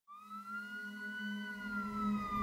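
A siren wailing as it fades in, its pitch rising over the first second and a half and then slowly falling, over a steady low hum.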